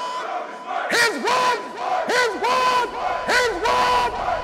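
A crowd of voices shouting together in a quick series of short, loud calls, each rising and falling in pitch, about every half second.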